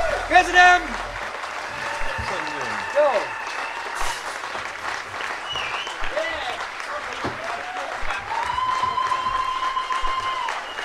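Audience applauding and cheering at the end of a song, with the band's last low note dying away in the first second and scattered shouts over the clapping. A long steady tone is held near the end.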